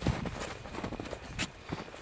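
Light, irregular crunching footsteps in snow, with two sharper clicks about a second apart.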